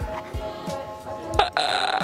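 Background music, then about one and a half seconds in a loud, rough burp right up close to the microphone that lasts under a second.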